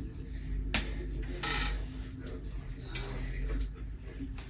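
Pull-ups on a freestanding pull-up tower: a single sharp click just under a second in and a short breathy exhale about a second and a half in, over a low steady hum.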